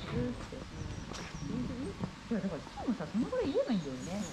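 A person's voice making a run of swooping vocal sounds, sliding sharply up and down in pitch, rather than speaking words. It starts about two seconds in and runs for under two seconds.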